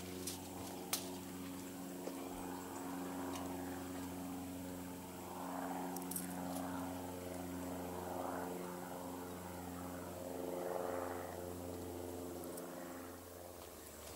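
Water from a tap running through a long garden hose and pouring out of its open end onto grass, with a steady low hum throughout that stops shortly before the end.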